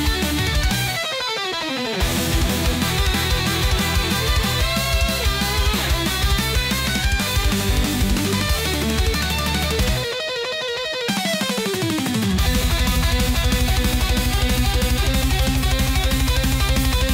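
Rock backing music with electric guitar. Twice the bass drops out for about a second, and after the second break a fast, steady beat comes in.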